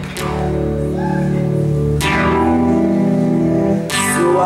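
Live rock band playing: electric guitar and bass strike full chords about two seconds apart and let them ring, with no singing.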